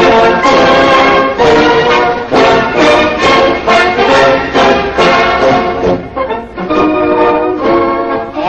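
Brass-led orchestral music: a series of loud held chords in short phrases, with a brief dip about six seconds in.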